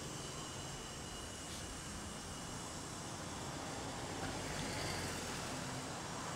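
Low, steady outdoor street noise of road traffic, swelling slightly about four to five seconds in.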